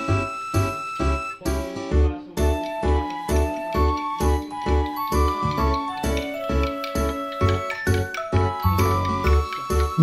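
Background music with a steady beat of about two a second under a light melody.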